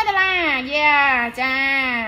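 A woman's voice drawing out long, sing-song syllables that fall in pitch, with a short break midway.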